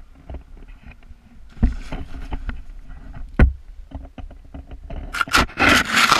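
A tandem paraglider lands in deep snow. There are a few dull knocks over a low rumble, then, about five seconds in, a loud scraping rush of snow as the harness slides into the slope and snow sprays over the camera.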